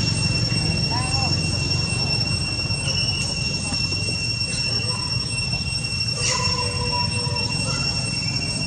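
Steady, high-pitched insect drone, two unbroken tones one above the other, over a low rumble. A short chirp comes about a second in, and a brief sharper call comes near six seconds.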